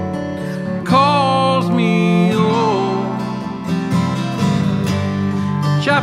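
Chamber-folk song: acoustic guitar playing under a cello, with a wavering melody line coming in about a second in and again midway.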